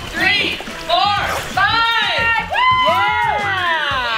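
High voices shouting and calling out in drawn-out rising and falling cries, over background music.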